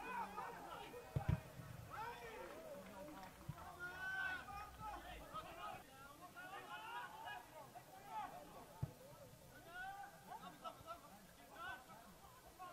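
Players and a small crowd calling and shouting across an open football ground. A ball is struck with a sharp thud about a second in and again near the end.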